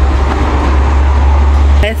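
Steady low rumble of wind buffeting the phone's microphone in the open doorway, with a short spoken word near the end.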